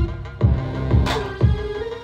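Hip-hop dance music with a heavy kick drum about twice a second, a sharper hit roughly every second, and a held melody line that bends in pitch.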